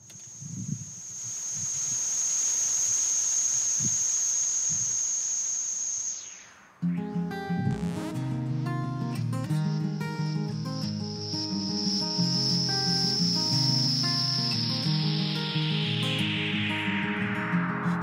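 Instrumental intro of a live band song: a steady hiss with a high held tone swells and fades over the first six seconds, then acoustic guitars begin strumming chords about seven seconds in. Near the end a high tone slides steadily down in pitch over the guitars.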